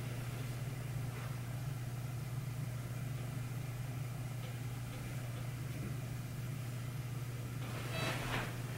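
A steady low hum over faint room noise, unchanging throughout.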